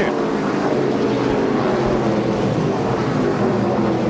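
A pack of NASCAR K&N Pro Series stock cars at racing speed, their V8 engines blending into one steady drone of several overlapping engine notes.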